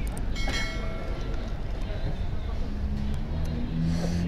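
Street traffic, with a vehicle engine rumble that grows louder in the second half. A short ringing tone sounds about half a second in and fades within a second.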